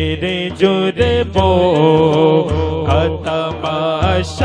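A man's voice singing a naat, an Urdu devotional poem, through a microphone and PA, in long wavering melismatic lines over a low hum that pulses on and off.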